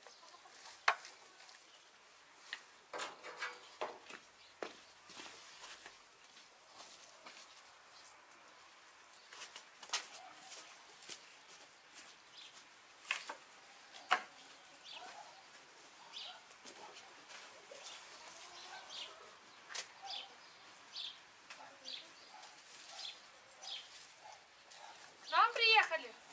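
Hens clucking now and then in a backyard, with occasional sharp knocks and short high chirps.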